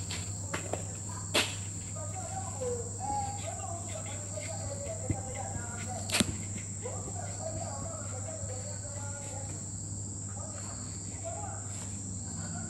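Whiteboard marker squeaking as words are written on the board, in two stretches of a few seconds each, with a couple of sharp taps. A steady high-pitched whine and a low hum run underneath.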